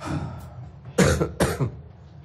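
A person coughing: two sharp coughs about half a second apart, about a second in, after a short breath.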